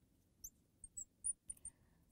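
Marker tip squeaking on a glass lightboard while writing: a string of short, faint, high squeaks.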